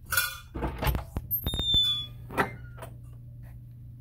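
A metal lever door handle and latch clicking, then a brief high squeak as the door swings open.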